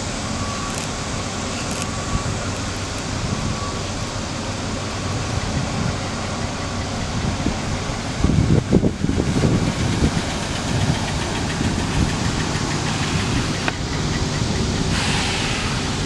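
A 2009 Chevrolet Silverado's 5.3-litre V8 running steadily at idle, with a louder, uneven rumble for a couple of seconds about halfway through.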